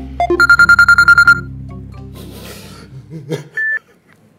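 Mobile phone ringing with a rapid electronic trill for about a second, over background music. A single short beep follows near the end.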